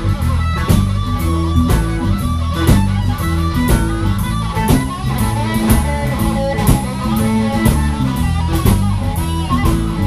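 Live blues band playing an instrumental break: electric guitar and harmonica over a steady drum beat.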